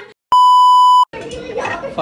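A single steady high beep, about three quarters of a second long, switching on and off abruptly between moments of dead silence: an edited-in bleep tone. Voices take up again right after it.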